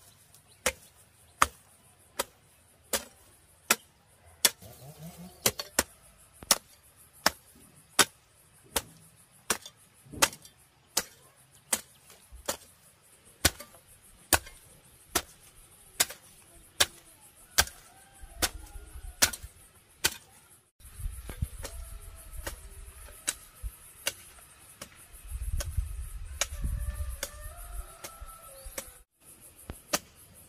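A hand hoe chopping into dry, clumpy soil in a steady rhythm, about three strikes every two seconds. A low rumble comes and goes in the second half.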